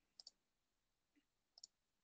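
Near silence with a few faint computer mouse clicks: two quick clicks a fraction of a second in and one more near the end.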